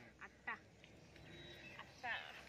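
Near silence, broken by two faint, very short calls about a quarter and half a second in.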